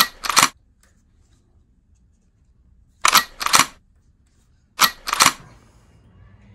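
Toy blaster pistols being reloaded and cocked by hand: three pairs of sharp plastic clacks, the two in each pair about half a second apart. The first pair comes near the start, the second about 3 s in and the third about 5 s in.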